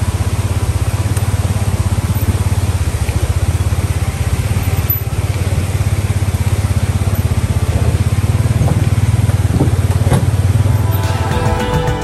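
Polaris side-by-side UTV engine running steadily at low revs, with the rush of a mountain creek beside it. Near the end the engine sound cuts off and music begins.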